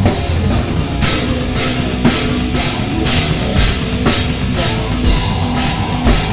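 Heavy rock band playing loud, with the drum kit up close: a rapid kick drum under the band and a cymbal crash about every second.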